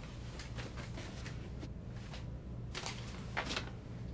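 Steady low hum of a submarine interior, with faint handling rustles and a couple of short clicks or rustles near the end.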